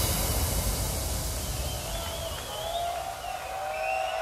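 Breakdown in a hard techno DJ mix: the kick drum drops out at the start, leaving a quieter wash of noise with faint wavering and gliding synth tones that build toward the end.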